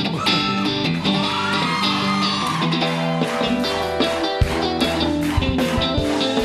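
Calypso-style pop band playing a song's instrumental intro. An electric guitar lead slides up over sustained chords. Bass and drums come in about four seconds in.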